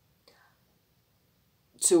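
A pause in a woman's speech: near silence with only a faint soft sound about a quarter of a second in, then her voice resumes near the end.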